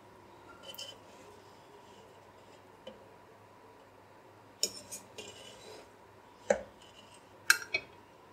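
Metal slotted spoon scraping and clinking against a non-stick cooking pot as cooked rice is scooped out, in scattered short strokes: a few about a second in, a cluster near five seconds and a couple near the end.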